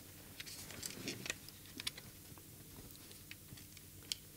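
Faint, scattered small clicks and light taps of plastic as hands turn over and handle the opened case of a RadioMaster Boxer radio-control transmitter while an AG01 gimbal is fitted into it.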